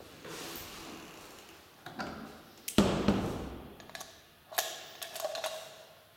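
Elevator landing door being handled and shut: one heavy thump about three seconds in, then a few sharp clicks with a short squeak near the end.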